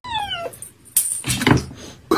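A cat's short meow falling in pitch, followed about a second in by a sharp knock and a few heavy thumps.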